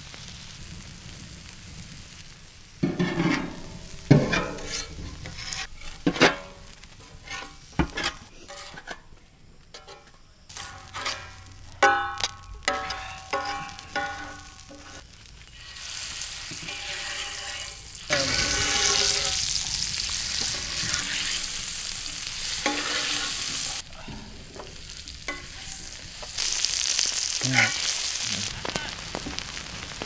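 Masala-coated goat brains frying in hot oil on a large iron tawa. The first half has scattered clicks and knocks. About halfway through, a steady, loud sizzle takes over. It dips for a moment and comes back near the end.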